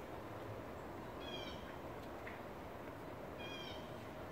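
A bird gives two short, nasal, cat-like mewing calls about two seconds apart, each slightly falling in pitch.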